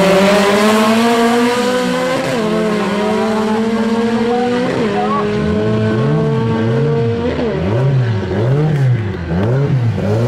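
Two small hatchback engines at full throttle as the cars accelerate side by side down a drag strip. The engine note climbs and then drops sharply at each upshift, several times. From about halfway in, a repeated low tone rises and falls about once every second.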